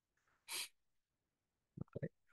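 A man's short, sharp breath about half a second in, with faint mouth sounds near the end; otherwise near silence.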